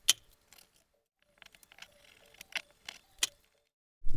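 Scattered sharp clicks and taps from small hand tools being handled and set down. The loudest comes right at the start, and a few more follow in the second half.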